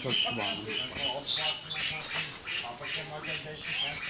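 Parrots squawking and chattering in a rapid series of short, harsh calls.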